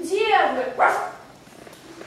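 A performer's voice imitating a dog's bark: a falling yelp followed by a short bark, ending a little over a second in.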